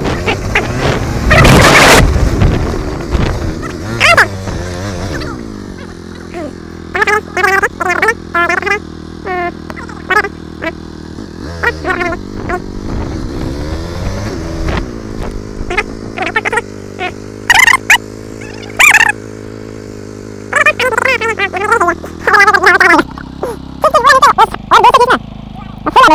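KTM motorcycle engine running under a rider moving slowly over grass, with a loud rush about a second in and a brief change in engine pitch about halfway through. Voices or singing come and go over it.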